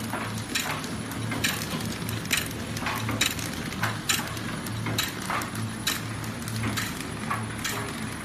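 Horizontal flow-wrap pillow packaging machine running, with a steady low hum and a regular mechanical clack about once a second from its wrapping cycle.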